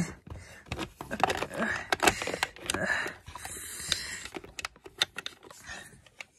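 Hard plastic toys clattering and knocking together as they are handled and shifted about: a quick, irregular run of clicks and taps.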